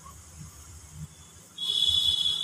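Faint low hum, then a steady high-pitched tone like a beep or whistle starts about a second and a half in.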